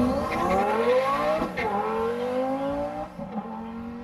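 Car engine accelerating hard, its pitch climbing steadily and dropping sharply about one and a half seconds in and again near three seconds, as at gear changes.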